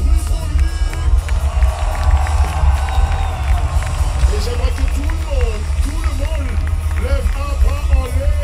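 Live band music (guitar, keyboards and drums) with a heavy, booming bass, heard from within the audience, with crowd voices over it.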